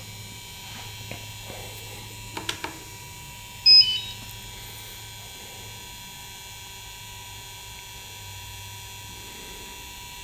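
DJI Phantom 4 Pro remote controller beeping as it powers on: a short electronic beep of a few high tones about four seconds in, after a couple of faint clicks, over a low steady hum.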